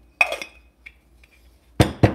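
Small stainless steel coffee dosing cups clinking as ground coffee is tipped from one into the other: a sharp ringing clink about a quarter second in, a faint tick midway, and a louder knock near the end.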